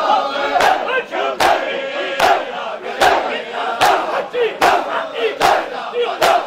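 A crowd of mourners beating their chests (matam) in unison, a sharp slap about every 0.8 seconds, with many men's voices chanting between the strikes.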